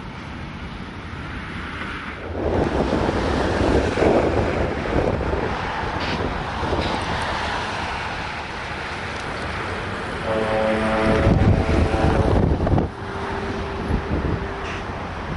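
Wind buffeting the microphone, a rough rushing that swells about two seconds in and stays loud. Near the end a steady engine drone joins in for a couple of seconds and then cuts off.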